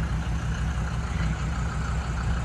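Engine of a high-mileage Mercedes sedan running steadily at a low, even note, with a steady hiss over it.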